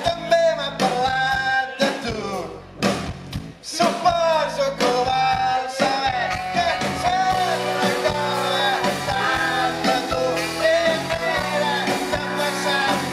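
Live rock band playing with a lead singer: drums, electric guitar and bass under the vocal. The music drops back briefly about three seconds in.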